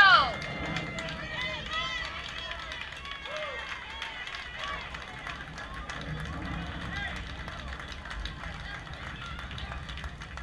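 A loud, high-pitched shout trails off at the very start, then distant chatter and calls of children and adults go on at a low level over a steady low rumble of wind on the microphone.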